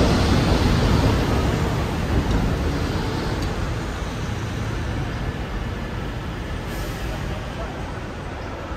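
Heavy road traffic passing close by under a railway bridge: double-decker buses and a lorry, a deep rumble that fades gradually over several seconds.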